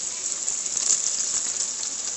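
Diced sausages, peppers and tomato sauce sizzling steadily in a cooking pot.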